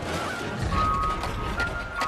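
Ice cream truck jingle playing through the truck's roof loudspeaker, a simple tune of clear held notes over a low rumble.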